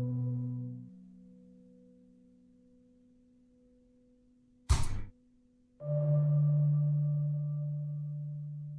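Ambient generative background music: long held soft tones that fade almost to silence by about three seconds in, then a new set of held tones comes in near six seconds and slowly fades. A short, sharp noise sounds just before five seconds.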